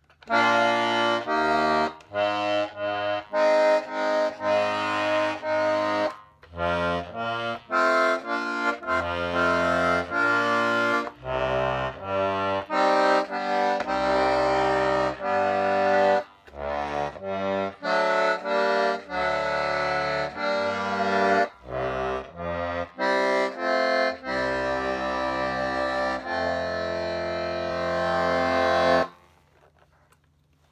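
Circa-1925 M. Hohner two-voice, 12-bass button accordion in B♭/E♭ playing a tune: melody over alternating bass and chord notes, in phrases with short breaks between them. Its reeds are freshly tuned a little wet for a gentle tremolo, and the chords are tuned with flattened thirds for a sweeter sound. The playing stops near the end.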